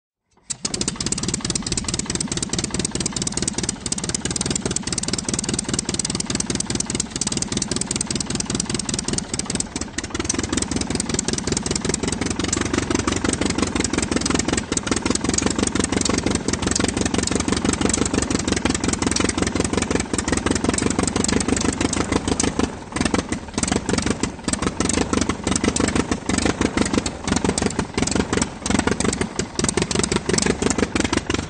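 Aircraft engine running with a fast, even firing beat. About ten seconds in it grows louder and deeper, and it briefly dips a little after twenty seconds.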